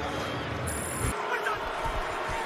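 Steady stadium crowd din as carried on a TV football broadcast. About a second in, the low rumble drops away suddenly at an edit cut.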